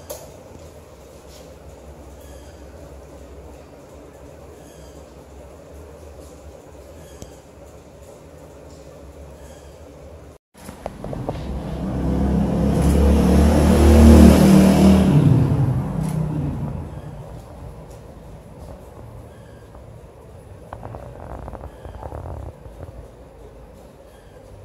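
A heavy road vehicle driving past, its low rumble swelling to a loud peak and fading away over about five seconds, starting about halfway in. Before it there is only a steady low background hum.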